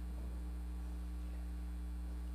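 Steady low electrical mains hum with a few faint higher overtones, unchanging throughout.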